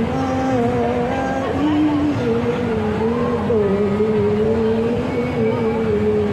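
A woman chanting dhikr into a handheld microphone, amplified through a portable speaker, in long held notes that glide slowly up and down in pitch.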